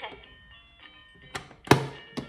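The plastic lid of a VTech KidiSecrets electronic jewellery box being shut by hand: a small click, then a single sharp clack as it closes, near the end.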